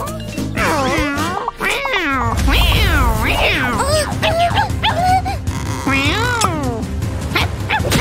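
Wordless cartoon vocalizations with swooping, rising and falling pitch, one after another, over background music; a bass-heavy beat comes in about two and a half seconds in.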